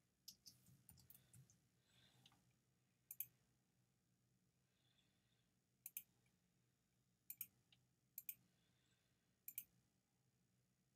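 Faint clicks of a computer mouse button, mostly in close pairs, every second or two, over a low steady hum.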